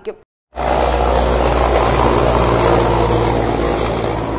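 Steady, loud rotor and engine noise of an Indian Air Force Mi-17V5 helicopter passing low overhead. It starts abruptly about half a second in.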